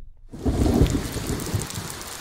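Cartoon soundtrack of heavy rain with a low rumble of thunder, coming in after a brief hush at the very start.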